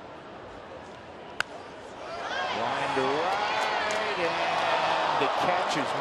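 Crack of a wooden bat hitting a pitched baseball about a second and a half in, followed by a stadium crowd's shouting that swells and stays loud as the fly ball carries.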